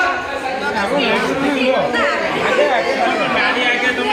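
Chatter: several girls' and women's voices talking over one another, with no single clear speaker.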